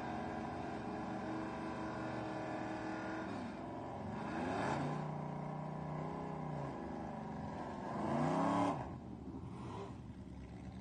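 Fifth-generation Chevrolet Camaro SS's 6.2-litre V8 idling, then revved twice. The first rev rises, holds steady for about two seconds and falls back. The second, near the end, is the loudest and cuts off suddenly.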